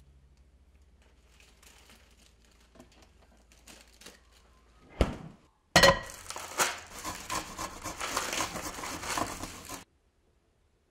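Hands crushing and tearing a head of romaine lettuce: a loud, dense crisp crackling and snapping of leaves that starts suddenly about six seconds in and cuts off abruptly near the end. A single sharp knock comes just before it.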